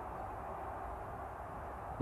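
Faint, steady background noise with a low hum underneath and no distinct events.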